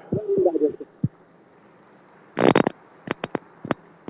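Scattered hand claps from a large seated audience: a dense burst of clapping about halfway through, then a handful of separate claps near the end. A brief low, voice-like sound and a single knock come before them.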